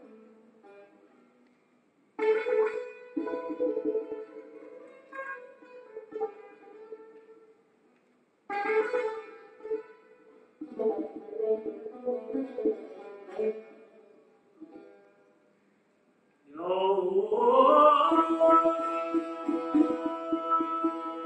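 Solo improvisation on a plucked long-necked Persian lute: short phrases of picked notes that ring and fade, broken by near-silent pauses. About three-quarters of the way through, a singing voice comes in on a rising line over the strings, louder than the lute.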